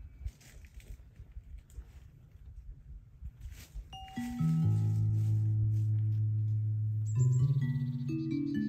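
Plant music synthesizer playing slow electronic notes, its tones driven by electrical signals read from a plant. The first few seconds hold only faint low noise and crackles. About four seconds in a single note sounds, then sustained low bass tones enter and change pitch near the end.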